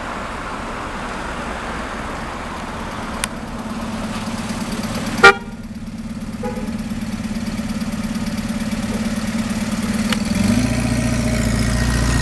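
Vehicle engines running on a street, with one short, loud car horn toot about five seconds in. Near the end an approaching car's engine grows louder.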